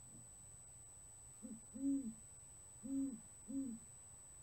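Male great horned owl giving courtship hoots: four deep hoots in its typical rhythm, a short one, a longer one, then two more, starting about a second and a half in.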